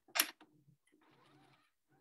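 Necchi HP04 electronic sewing machine making a short run of a few stitches about a quarter second in, driven by a brief tap of the foot pedal, followed by faint, quieter running.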